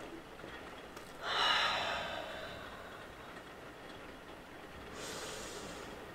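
A woman's long, forceful exhale through the mouth, starting about a second in: the paced out-breath of a Pilates mermaid stretch, breathed out as the reformer carriage is pressed out. A softer, shorter in-breath follows near the end.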